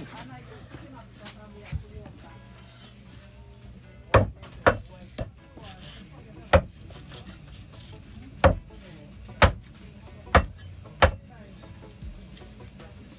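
A cleaver chopping dried salted fish on a wooden butcher block: about seven sharp, heavy chops at uneven intervals, starting about four seconds in.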